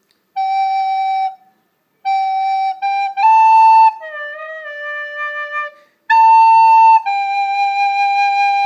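White plastic soprano recorder playing a slow phrase of single held notes, F♯–G–A–D–A–G. The first note sounds alone before a short pause. The D is the lowest note, and the last G is held past the end.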